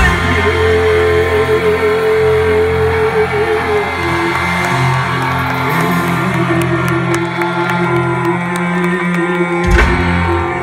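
Punk rock band playing live through a concert PA, with long held notes over guitars, recorded loud from the crowd on a phone. The deepest bass drops away about seven seconds in.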